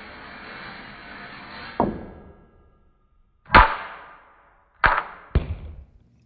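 A ball rolling along a metal ramp track with a small knock as it leaves, then, after a short silence, landing with a loud hard impact on a terrazzo floor and bouncing twice more, each bounce quieter and sooner than the last.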